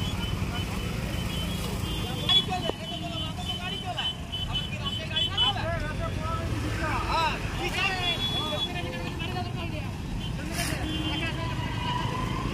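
Road traffic jammed in a slow queue: the steady rumble of motorcycle and other vehicle engines running, with voices and short high-pitched calls over it.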